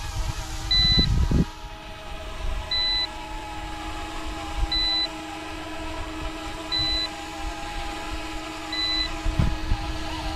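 Electric RC scale Coast Guard helicopter flying overhead: a steady motor and rotor whine whose pitch wavers slightly as it manoeuvres. A short electronic beep repeats about every two seconds, and wind rumbles on the microphone about a second in and again near the end.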